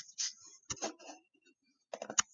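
A few light, irregular ticks and taps of a stylus on a tablet screen during handwriting.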